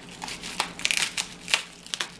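Plastic bubble wrap crinkling and crackling as kitchen scissors cut it away from a glass jar, with a few short, sharp snips and crackles.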